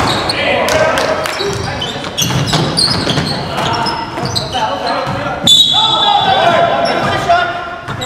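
Live basketball game in a gymnasium hall: a ball bouncing on the hardwood among players' shouts, then about five and a half seconds in a referee's whistle sounds one long, shrill note to stop play for a call.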